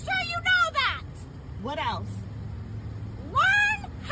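A woman shouting angrily, her voice breaking into high, strained yells that swoop up and fall away, over the low steady hum of an idling car.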